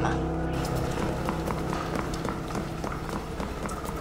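Quick footsteps clicking on a hard floor, about three steps a second: someone hurrying in.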